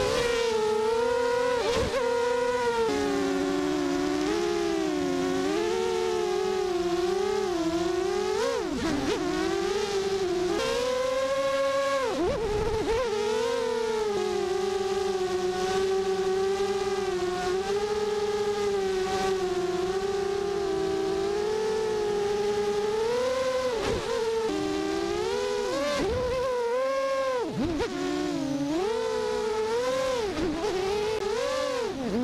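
Sunnysky brushless motors and propellers of an FPV racing quadcopter, heard from its onboard camera: a steady, loud whine whose pitch rises and falls with the throttle. Several times the pitch drops sharply and swoops back up as the throttle is chopped and punched, notably around 8, 12, 24 and 26–28 seconds in.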